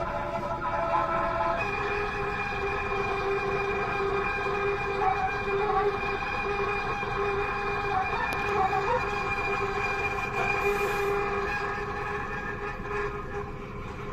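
Solo soprano saxophone sustaining long, unbroken notes: one held note shifts down to a lower one about a second and a half in, and the lower note is then held without a break, with a bright, overtone-rich tone that eases off near the end.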